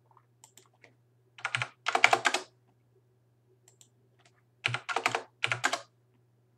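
Computer keyboard typing: four short bursts of keystrokes, heard over a faint steady low hum.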